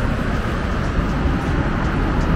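Wind buffeting the microphone in an uneven low rumble, over a steady hiss of road traffic.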